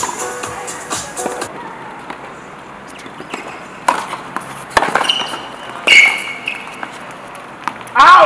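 Tennis ball struck by rackets and bouncing on a painted hard court, with two short high shoe squeaks about five and six seconds in, the second loud. Background music plays at the start and stops about a second and a half in.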